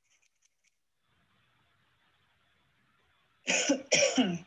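Faint, quick typewriter-style clicks as text is typed onto the screen, then a faint hiss. Near the end a person coughs loudly.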